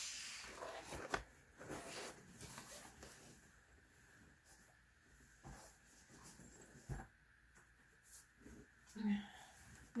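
Faint handling sounds: rustling and a few soft knocks as a zip-around fabric pencil case is picked up and moved away.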